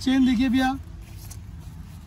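A man's voice for under a second, then a steady low background rumble until the talk resumes.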